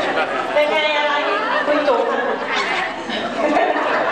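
Several people talking over one another in a large hall, in lively chatter.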